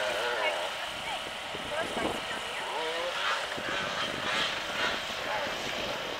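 Distant off-road motorcycle engine droning, its pitch rising and falling as the rider works the throttle.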